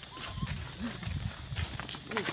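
Long-tailed macaques giving brief calls, among scattered clicks and taps.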